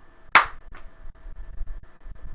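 A single sharp smack about a third of a second in, then a fainter click, over a faint steady hum.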